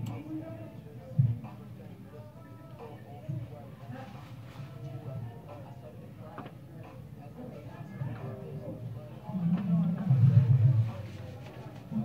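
Hip-hop track with rapped vocals played back at low level, picked up from the room, growing louder for a moment about nine seconds in.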